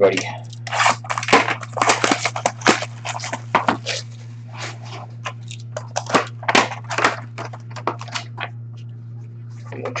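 Plastic shrink-wrap on a cardboard hockey card box being slit and torn off, crackling and crinkling in quick irregular bursts, over a steady low hum.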